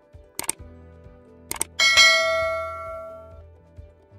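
Subscribe-button sound effect: two quick pairs of mouse clicks, then a bell ding that rings and fades away over about a second and a half, over quiet background music.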